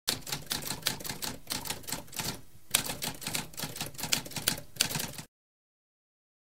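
Typewriter keys clacking in a quick, uneven run, with a brief pause about two and a half seconds in. The typing cuts off suddenly about five seconds in.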